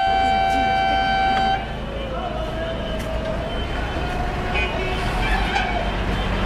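A vehicle horn held on one steady note, cutting off about a second and a half in. Busy background noise with faint voices follows.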